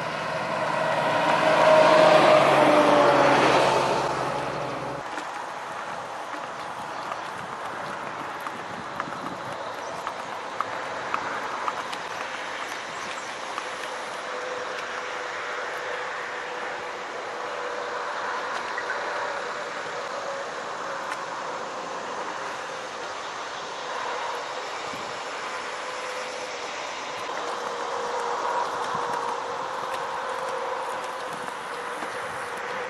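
A tank truck driving past close by: its engine and tyre noise swells to a peak about two seconds in and fades over the next two, the pitch dropping as it passes. After a sudden change about five seconds in, a steady, quieter background follows with a few faint clicks of hooves on pavement.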